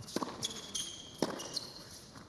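Tennis ball struck by racquets in a rally, two sharp hits about a second apart, heard faintly in match broadcast audio over a quiet arena hush.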